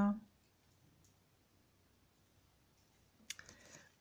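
Near silence, then a little after three seconds in, a short run of clicks and soft rustling from a tarot card being laid down on the deck and the next card handled.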